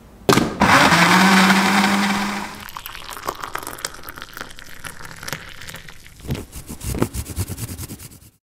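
Countertop blender running for about two seconds on banana, milk and honey, its motor pitch rising as it gets up to speed, then cutting off. Then a thick smoothie pours into a glass, and a few sharp scraping strokes near the end come from chocolate being grated.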